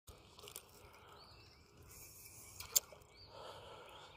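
Quiet lakeside ambience with faint bird calls, broken by a few small clicks and one sharp click about three-quarters of the way through.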